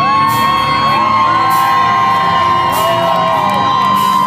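A live dark-wave rock band playing, with one long high note held steady through the whole stretch. Audience members whoop and cheer over the music.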